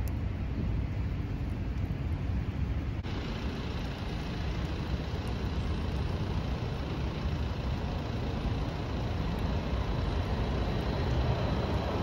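Steady outdoor city traffic noise. From about three seconds in, a tram approaches along its track and grows louder toward the end as it draws close.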